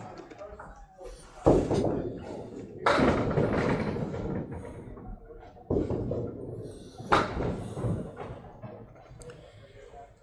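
Candlepin bowling alley: four sudden heavy knocks, each trailing off in a rumble that lasts a second or more, from balls, pins and pinsetter machinery on the lanes.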